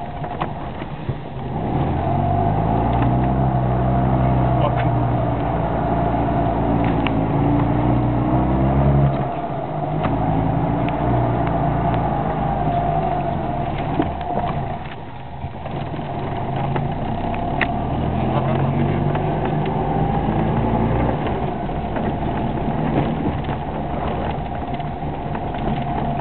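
Fiat 126p's small air-cooled two-cylinder engine heard from inside the cabin while driving, the revs climbing under throttle and then dropping off several times.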